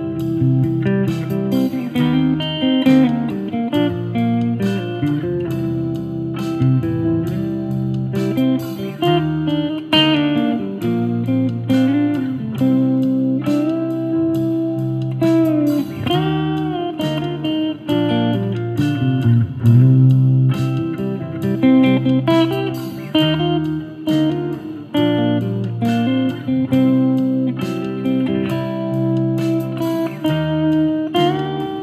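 Clean-toned semi-hollow electric guitar improvising a solo of arpeggios and pentatonic runs against the chords, with string bends that glide the pitch up a step.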